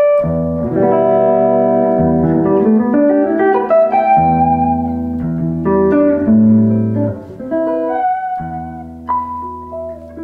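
Electric guitar, an early-1990s PRS Custom 24 on its neck humbucker, played through a Line 6 Relay G10 wireless with a little reverb and no other effects. It plays held chords and single notes that change every second or two.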